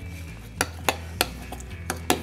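Muddler pounding lemon wedges in a small stainless steel shaker tin, pressing out the juice and peel oils, with four sharp knocks against the tin.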